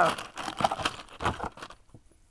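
Clear plastic bags of Lego pieces crinkling as they are pulled out of a cardboard box, an irregular run of crackles that dies away near the end.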